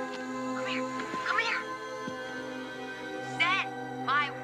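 Held, sustained music notes with a cat meowing over them, most clearly near the end.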